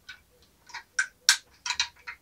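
Hard plastic toy car being handled: about six small, sharp clicks and taps of plastic parts and fingers on plastic, spaced irregularly, the loudest a little past the middle.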